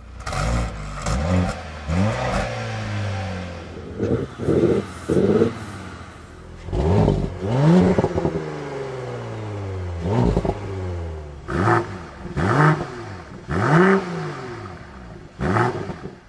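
Turbocharged performance-sedan engines, among them the Audi S4 TFSI's V6, started and revved at standstill through the exhaust. A start-up flare opens, then a series of short throttle blips and longer revs, the engine note rising and falling each time.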